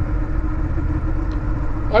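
Honda Rebel 1100's parallel-twin engine running at a steady cruise, heard from the rider's seat with a low, even rumble of road noise.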